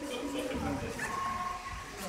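Chatter of people in a hall, with a child's high-pitched voice drawn out for about half a second a second in.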